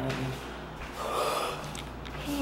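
A woman's voice: a short pitched vocal sound that ends just after the start, then a loud, breathy, gasp-like rush of air about a second in.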